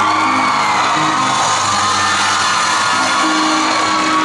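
Live band of acoustic guitar, electric guitar and drums playing sustained chords, with the audience cheering and whooping over the music.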